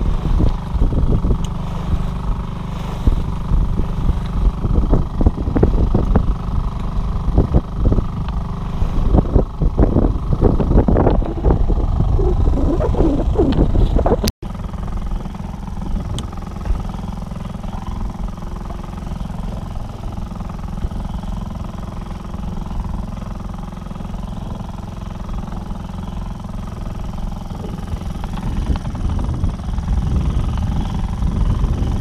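Small sailboat's outboard motor running steadily under way, with water rushing and splashing along the hull. After a brief break about fourteen seconds in, the motor's hum carries on steadier and the splashing is lighter.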